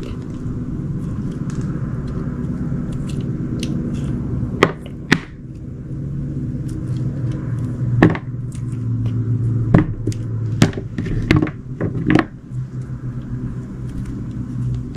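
Craft knife slicing through a block of soft glycerin soap, giving a run of about seven sharp clicks and snaps as the blade cuts through the pieces. A steady low hum runs underneath.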